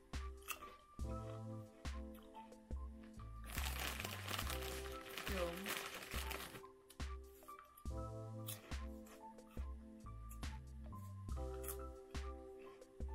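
Background music with sustained notes and a stepping bass line. Between about three and a half and six and a half seconds in, a foil crisp packet crinkles loudly as a hand rummages in it.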